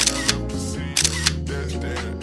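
Camera shutter sound effects: two shutter clicks, each a quick double click, one at the start and one about a second in, over background hip-hop music.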